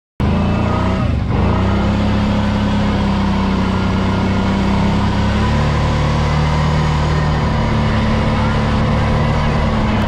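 ATV engine running steadily close to the microphone as the quad rides over snow-covered ice. It dips briefly about a second in, and its pitch steps down about halfway through.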